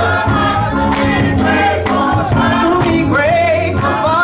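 Gospel choir and praise team singing together in church.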